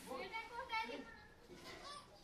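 Voices speaking, a child's high voice among them, in short bursts.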